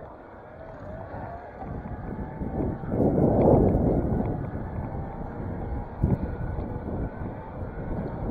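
Wind rushing over the camera microphone, with tyre noise from a bicycle rolling fast down a paved road. The wind swells about three seconds in, and there is a single knock about six seconds in.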